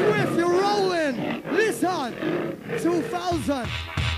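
Jungle drum and bass mix: a sample of short, pitched, arching vocal or animal-like cries repeats over and over, then deep bass and drums drop back in about three and a half seconds in.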